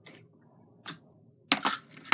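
Metal jewellery tools and wire clinking as they are handled, with a faint click just under a second in and a louder, short clatter about one and a half seconds in.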